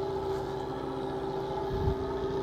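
Fishing boat's engine running with a steady hum, with a brief low thump near the end.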